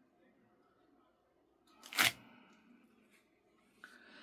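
A clear acrylic stamp being peeled up off a paper postcard: one short sharp tearing rustle about halfway through, with little else heard.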